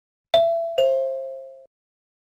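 Two-note ding-dong chime, like a doorbell: a higher note struck, then a lower one about half a second later, each ringing and fading before cutting off suddenly.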